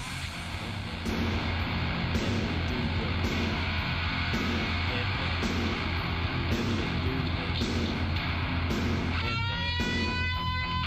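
Heavy metal instrumental: distorted electric guitar and bass over a steady pulsing low end, getting louder about a second in. Near the end a lead guitar line enters, held notes that bend in pitch.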